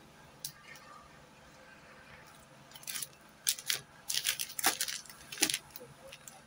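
Paper and plastic wrapping crinkling and rustling as it is handled, quiet at first, then a run of short, sharp crackles from about halfway in.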